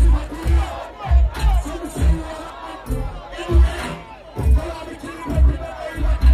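Live dancehall music over a PA with a heavy, pulsing bass, and a crowd shouting and singing along.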